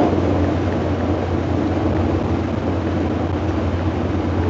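Steady low drone and rumble of a passenger vehicle's cabin in motion, heard from a seat inside.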